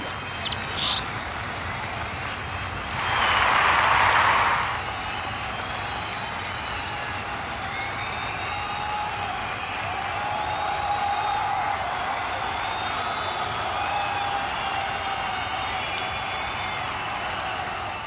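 Football stadium crowd ambience from a match broadcast: a steady din of the crowd, with a louder swell of crowd noise about three seconds in lasting a second or two, and faint wavering voices later on.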